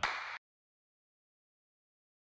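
Complete digital silence, after a brief noisy sound in the first half second that cuts off abruptly.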